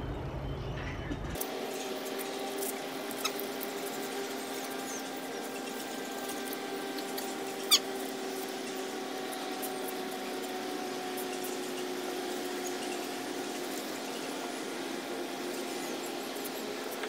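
Water spraying from a garden hose onto a car during a hand wash: a steady hiss with a faint hum, and one short squeak about eight seconds in.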